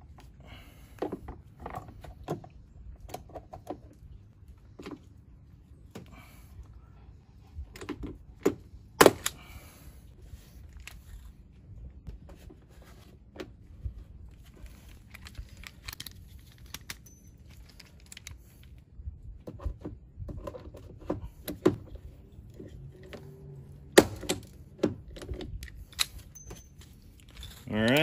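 Hand pop-rivet tool setting rivets through a plastic fender flare into a truck door: scattered clicks and knocks of the handle being squeezed, with two sharp snaps, about 9 s and 24 s in, as the rivet mandrels break off.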